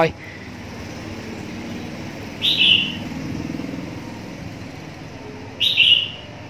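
A bird chirping twice, each a short falling call about three seconds apart, over a faint low rumble of street traffic.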